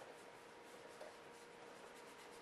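Faint soft swishing of a small mop brush rubbing aluminum powder pigment into the surface of a brown trout reproduction, in short repeated strokes, over a faint steady hum.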